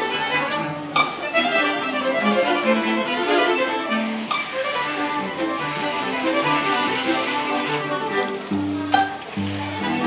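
String quintet of two violins, viola, cello and double bass playing a lively bowed piece, with deep double-bass notes coming in near the end. A few sharp clicks cut through the music about a second in, near the middle and near the end.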